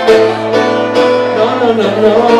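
Acoustic guitar strummed live, chords struck in a steady rhythm about twice a second.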